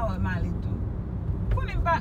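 Steady low rumble of a moving car's engine and tyres on the road, heard inside the cabin, under people talking.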